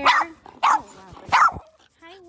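A dog barking three short, sharp barks, evenly spaced about two-thirds of a second apart.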